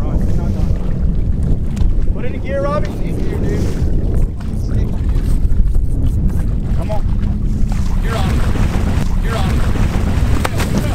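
Wind buffeting the microphone in a steady low rumble over open water, with short shouted voice fragments about two seconds in and again near the end.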